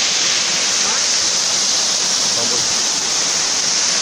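Waterfall cascading down rock ledges close by: a steady, loud rush of falling water.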